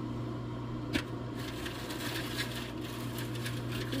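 Herbsnow herb dryer's fan running with a steady low hum, with one light click about a second in.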